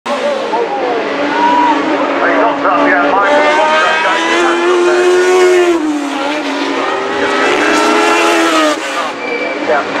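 Historic Formula One car engines running at high revs, their pitch rising and falling as the cars accelerate, lift and pass.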